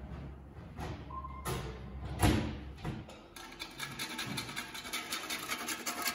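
Kitchen handling at a built-in oven: a few clicks, then one loud thump a little over two seconds in as the oven door is shut. From about three seconds in, a box grater rasps in quick, even strokes.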